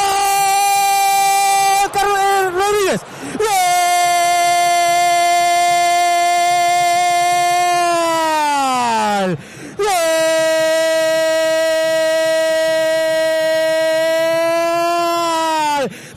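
Radio football commentator's drawn-out goal cry, one high note held in three long breaths, each sagging in pitch as the breath runs out.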